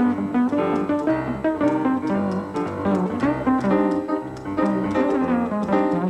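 Upright double bass played pizzicato together with piano, a steady run of plucked notes in an instrumental passage.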